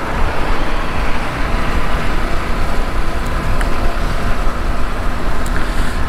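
Motorcycle riding at speed: a steady rush of wind over the rider's microphone mixed with engine and road noise.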